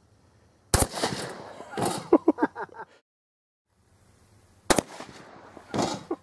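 A 12-gauge shotgun firing a wax slug: a sharp report under a second in, with a trailing decay. A second sharp crack comes about four seconds later, and a further burst follows near the end.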